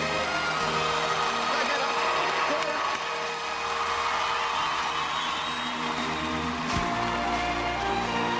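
Background music playing over a theatre audience applauding and cheering.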